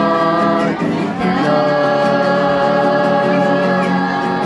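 Group of voices singing a slow church hymn in long held notes, moving to a new chord about a second in.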